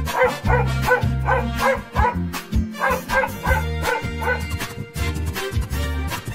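A dog barking in a quick run of short yaps, about three a second, which stops about four and a half seconds in, over background music.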